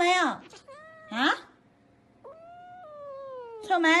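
A silver tabby cat meowing four times: a loud falling meow at the start, a rising one about a second in, a long, quieter drawn-out meow from just past two seconds, and another loud meow near the end.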